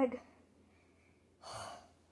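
A child's single short, breathy gasp about one and a half seconds in, lasting about half a second, after the tail of a spoken word.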